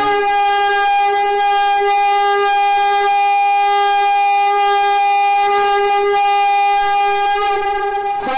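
A horn blast: one long note held steady on a single pitch, loud and unbroken.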